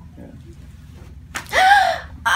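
A woman lets out a loud, high-pitched gasping cry near the end, just after a short click, as her neck is turned in a chiropractic neck adjustment.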